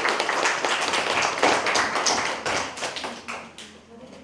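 A small room of children and adults applauding, many quick hand claps that thin out and die away in the last second.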